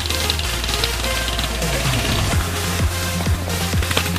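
Electronic dance music with a steady deep bass line; from about halfway in, bass hits that drop in pitch come roughly every half second.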